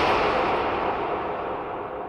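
Echoing tail of a song's final hit fading out steadily, the high end dying away first.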